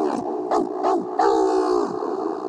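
A long wolf-like howl voiced by a person, twice, each a steady held note with a short break between.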